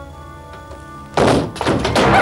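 Soft held music chords, then a loud, sudden thunk a little over a second in, followed at once by a second heavy knock.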